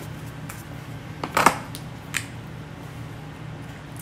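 Perfume spray bottle being sprayed onto skin: a short hiss about a second and a half in, and a fainter short one just after, over a steady low room hum.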